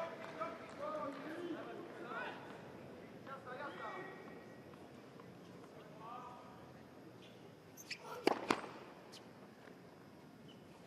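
A tennis ball bounced several times on the hard court by the server, sharp clicks grouped about eight seconds in, with one more a moment later. Faint crowd voices are heard before them.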